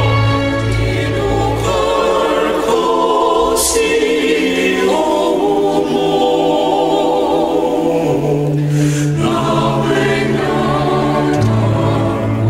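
A Twi gospel song: voices singing over instrumental accompaniment, with long held notes and a bass line changing every few seconds.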